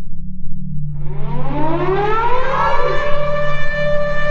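A siren-like tone winds up in pitch for about two seconds, starting about a second in, then holds one steady note over a low continuous drone.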